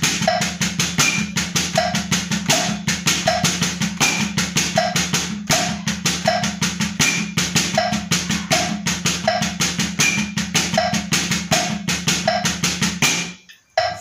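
Drumsticks playing a steady right–left–right-right–left sticking pattern on a rubber practice pad at 80 BPM, over a clicking metronome with a higher click every fourth beat. The playing stops abruptly about a second before the end.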